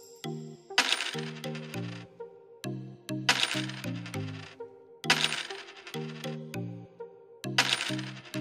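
Coins tumbling off a small motor-driven cardboard conveyor belt into a coin bank box, clinking in four short bursts about two seconds apart, over background music with a steady melodic beat.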